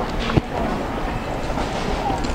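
Rumbling, rattling movement noise from a handheld camera being carried quickly along a store aisle, with one sharp knock about half a second in.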